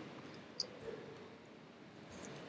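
Quiet room tone with one soft computer mouse click about half a second in.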